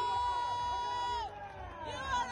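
Finish-line crowd with one voice holding a long, high shouted note that bends down and breaks off about a second in, over a steady low rumble.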